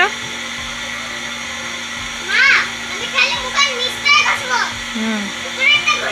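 A young boy's high-pitched voice making a few short calls that rise and fall in pitch, starting about two seconds in, over a steady hum and hiss.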